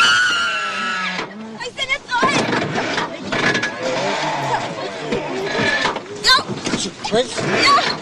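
Several people's voices overlapping, talking and calling out, beginning with a high wavering voice in the first second.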